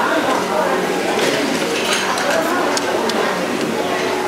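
Background chatter of other people talking, with a few light clinks of tableware.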